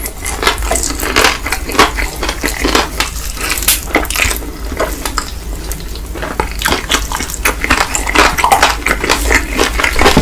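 Close-miked chewing of crispy fried chicken, a dense run of small crunches and crackles with wet mouth sounds, a little stronger in the second half.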